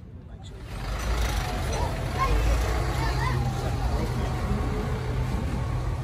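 Tilt-tray tow truck's diesel engine running with a steady low drone, under people talking.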